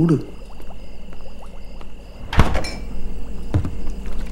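A door being opened in a quiet house: a sharp thunk with a brief rattle about two and a half seconds in, then a softer low knock about a second later.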